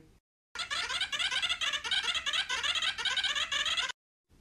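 A cartoon character's high-pitched, sped-up gibberish chatter, a rapid squeaky babble. It starts about half a second in and runs for about three seconds.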